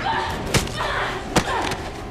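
Hits and body slams in a staged film fight: three sharp impacts of a body thrown against a wall and struck, the last coming about a second and a half in.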